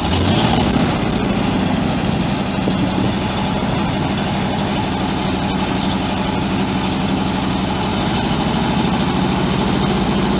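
1973 Chevrolet C65 truck's 427 cubic-inch V8 gas engine idling steadily, with a brief swell in level about half a second in.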